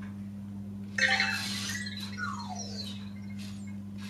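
Anki Vector robot answering a voice command: a short whirring burst from its motors about a second in, then its falling electronic chirps as it turns to face forward.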